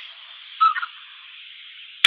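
Steady low hiss of an open telephone line while a call connects, thin and band-limited, with one brief faint sound about half a second in.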